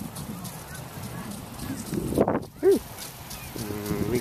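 Geese honking: two short, loud calls a little over two seconds in, the second a brief arched note, over steady wind noise.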